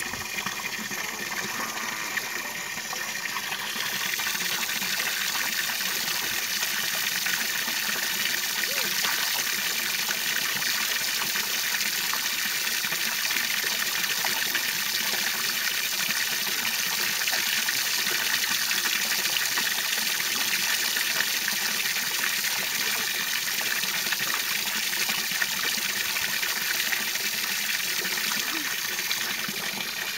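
Steady high-pitched hiss that gets a little louder about four seconds in and then holds even.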